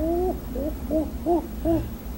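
Hooting: one rising call, then four short hoots about a third of a second apart.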